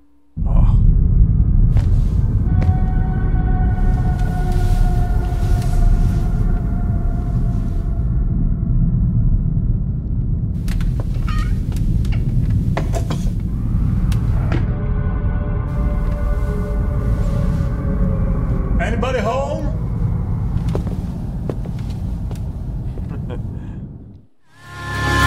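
Dark ambient closing section of a heavy-metal music video's soundtrack: a low rumbling drone with long held tones over it. A voice comes through at times, with a short wavering vocal sound about nineteen seconds in.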